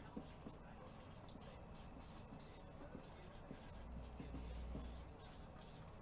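Faint computer keyboard typing: soft, irregular keystrokes, with a low hum swelling for about a second past the middle.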